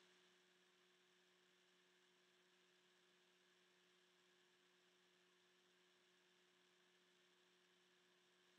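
Near silence, with only a faint, steady low hum.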